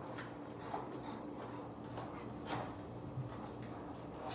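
Cardboard box being opened by hand: a few faint, scattered scrapes and taps of the flaps, over a steady low hum.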